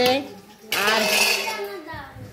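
Steel cookware scraping and clattering for about a second, starting partway in: a metal pot or plate being moved.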